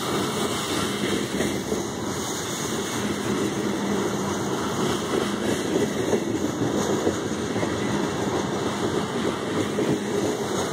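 Covered hopper and tank cars of a freight train rolling past on the track: a steady wheel rumble with rapid clicking of the wheels over the rails.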